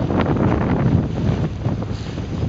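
Wind buffeting the microphone: a loud, uneven low rumble, with the wash of choppy water underneath.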